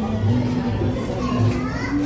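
Indistinct voices of a crowded restaurant dining room, with music playing in the background.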